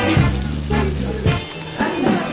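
Oil sizzling in a frying pan as breaded slices fry, with background music playing underneath.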